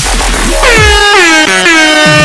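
Air horn sound effect blasting over dubstep-style electronic music: a long, loud horn starting about half a second in, re-sounding and stepping down in pitch as it goes, above heavy sliding bass hits.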